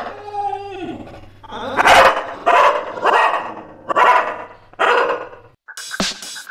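A dog barking five times in sharp, loud barks under a second apart, after a short whine that falls in pitch. Music starts just before the end.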